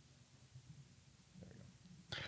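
Near silence: room tone, with a couple of faint low sounds about halfway through and again near the end.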